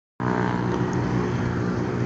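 Motorcycle engine running steadily while the bike is ridden slowly, heard from a handlebar-mounted camera. The sound starts suddenly just after the beginning.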